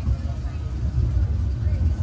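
The Barnstormer junior roller coaster's car rumbling along its track, a low uneven rumble heard from a seat in the moving car.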